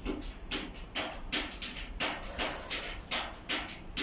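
A series of irregular sharp taps and clicks, several a second, over a steady low rumble.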